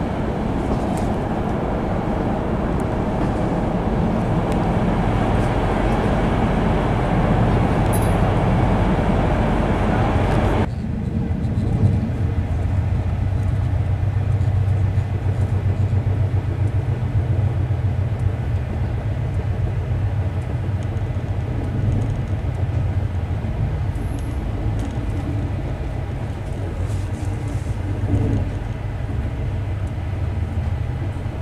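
Running noise of a moving passenger train heard from inside a couchette car: a steady rumble of wheels on rails. About ten seconds in, the higher hiss drops away suddenly, leaving a deeper rumble, with one sharp knock soon after.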